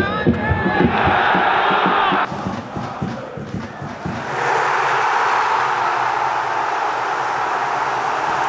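Football stadium crowd noise that changes abruptly about two seconds in, then swells about four seconds in into a loud, steady roar of cheering: the crowd celebrating a goal.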